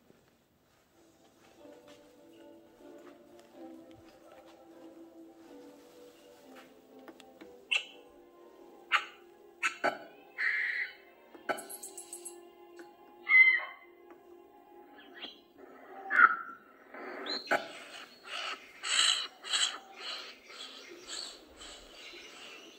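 Recorded forest soundscape playing in a diorama exhibit: soft sustained music notes, then bird calls and squawks that come more often in the second half, ending in a quick run of calls.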